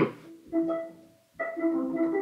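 Notes played on an electronic keyboard: a chord about half a second in that rings and fades, then after a short pause another chord and a few more held notes.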